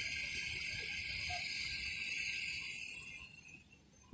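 Quiet night street ambience: a steady high-pitched chirring over a faint low rumble, fading away about three seconds in.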